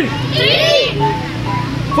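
A group of children's voices shouting in unison, answering a drill count, over a steady low hum.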